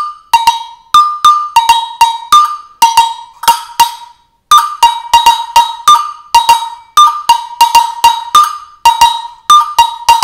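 Agogo bell struck with a drumstick, alternating between its higher and lower bell in a rhythmic pattern of about two to three ringing strokes a second, with a short break about four seconds in.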